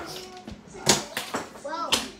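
A single sharp knock about a second in, with a few fainter taps around it. A child's short voiced sound comes near the end.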